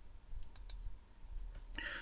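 Computer mouse button clicking: two quick, faint clicks close together about half a second in, over a low hum.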